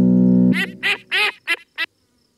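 Cartoon duck character Pato answering in his quacking duck voice: one held note, then a quick run of about five short, high quacks.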